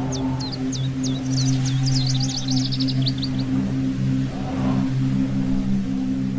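Ambient meditation music: a steady, low synth drone holding several tones, with slow swelling sweeps above it. A run of short, high falling chirps plays over the first half, coming faster before it stops a little past the middle.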